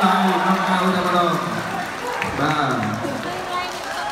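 A man's voice calling out over the fight: one long held shout for the first couple of seconds, then shorter bursts of excited talk.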